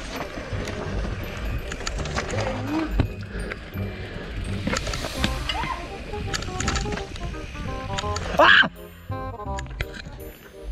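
A YT Capra Core 1 MX full-suspension mountain bike riding down a dirt forest trail. There is a low rumble with frequent rattles and knocks as the bike goes over bumps and roots, and background music plays over it. A brief loud sound comes about eight and a half seconds in.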